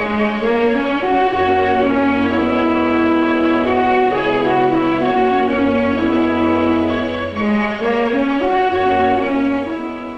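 Orchestral film score led by strings with brass, playing sustained, slowly changing chords.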